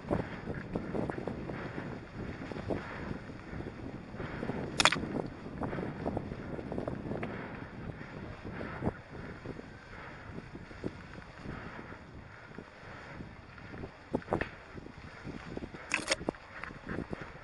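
Electric mountain bike riding a forest trail over dry leaves and twigs: a steady rolling, rustling noise full of small knocks and rattles from the bike. Two sharper knocks stand out, about five seconds in and near the end.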